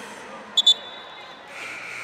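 Referee's whistle in a volleyball match: two short, sharp blasts about half a second in, marking the end of the rally after an ace serve. Steady hall background noise runs underneath.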